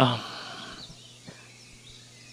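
A short spoken "ah" at the start, then low background noise with a faint steady hum.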